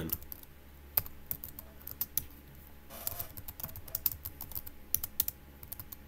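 Chromebook keyboard being typed on: irregular key clicks, with a quicker run of keystrokes about three seconds in.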